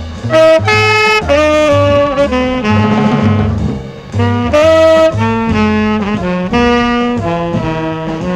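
1969 jazz recording: saxophone and trumpet play long held notes that step up and down in pitch, over a double bass line. The horns break off briefly about four seconds in, then come back in.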